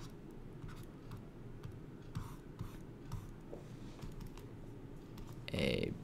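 Quiet room with faint, scattered light ticks and scratches, and a brief murmured voice near the end.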